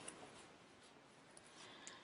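Near silence: room tone, with a few faint, brief ticks near the start and near the end.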